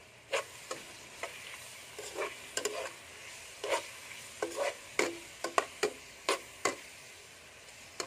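A metal spoon stirring shrimp and onions sautéing in oil in a nonstick pot, clinking and scraping against the pan in irregular strokes, the loudest about five and a half seconds in. A faint steady sizzle runs underneath.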